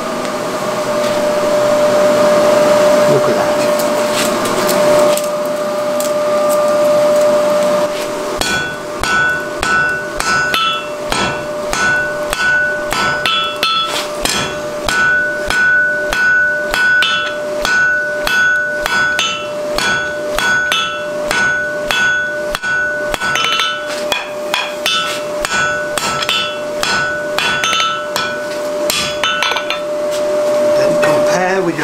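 Hand hammer striking the glowing end of a mild steel bar on an anvil, a long steady run of blows at about two to three a second, each with a metallic ring. For the first eight seconds before the hammering there is only a steady hum and hiss.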